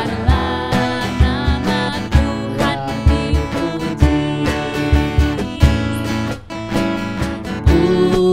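A woman leads a lively Indonesian children's praise song, singing into a microphone over strummed acoustic guitar and a steady low beat.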